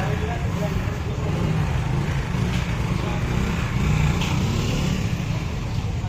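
Small commuter motorcycle engine running at low speed, a steady low rumble with background voices.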